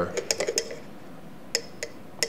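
Light clinks of a metal mesh strainer against a bowl: a quick cluster of clicks in the first half second, then two single clinks about a second and a half in.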